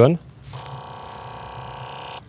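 Sony A9 III firing a 120-frames-per-second burst. Its electronic shutter sound repeats so fast that it runs together into a steady buzz, starting about half a second in and cutting off abruptly just after the burst.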